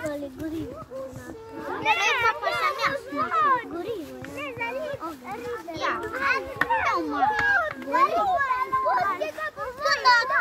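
Several young children's voices at play, high-pitched and overlapping, chattering and calling out in sing-song tones.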